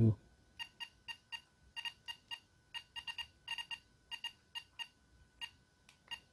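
ToolkitRC M7 charger's button beep: about twenty short, identical electronic beeps in quick uneven runs. Each beep is one press stepping the charge-current setting up by 0.1 A, from 4.0 A to 6.0 A.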